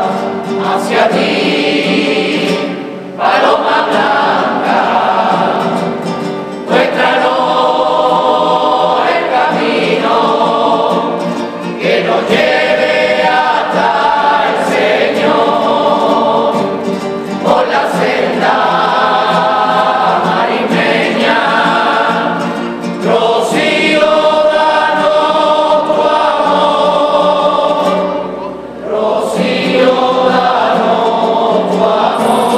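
A group of men and women singing together, accompanied by strummed Spanish guitars, in sung phrases of five or six seconds with a short breath between them.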